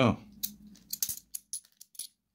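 A handful of bimetallic £2 coins clinking against each other as they are slid apart one by one in the hand: a quick string of sharp metallic clicks, a few ringing briefly.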